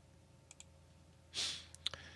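Light computer mouse clicks: two faint ones about half a second in, and two sharper, louder ones near the end, with a short breathy hiss just before them.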